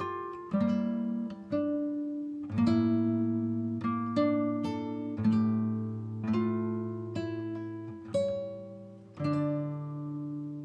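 Background music on acoustic guitar: slow chords, each struck and left to ring out, about one a second.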